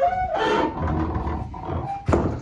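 Heavy riveted iron door being swung shut on old hinges: a loud, drawn-out creak, with a scraping rasp about half a second in.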